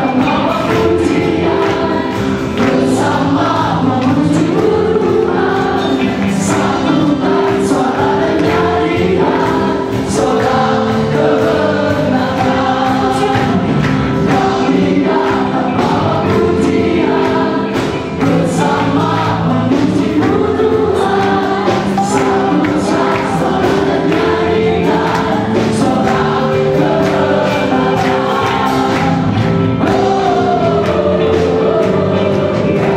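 A gospel-style Christian song sung by a vocal group over live band accompaniment, continuous and steady in loudness.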